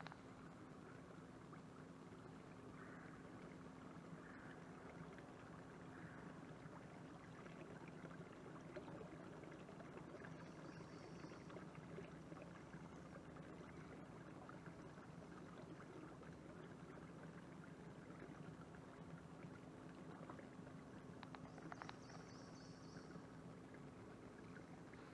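Near silence: faint water sounds of a canoe gliding through calm water over a steady low hum. Two short high-pitched chirps come, one about ten seconds in and one near the end.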